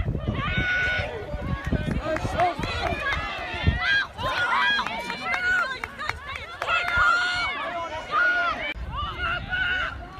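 Players and onlookers at a women's rugby league match shouting calls across the pitch during play, several high voices overlapping, with low rumbling thumps in the first few seconds.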